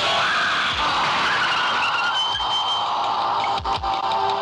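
Car tyres screeching in a long skid, with a high squeal partway through, over background music with a low drum beat.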